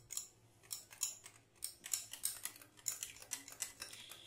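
Wire whisk beating thick besan (gram-flour) batter in a glass bowl, its wires ticking against the glass in a quick, irregular run of clicks, several a second. The batter is being beaten until it turns light.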